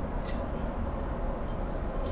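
Steady airliner cabin noise of a Boeing 777-200ER in cruise: a low, even drone of engines and airflow. A brief high-pitched sound comes about a quarter second in.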